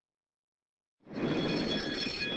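Starting-gate bell ringing and the steel gate doors springing open as the horses break, starting suddenly about a second in, with a steady high ringing held over the clatter.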